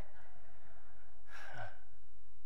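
A man's short breathy exhale about one and a half seconds in, over a low steady hum.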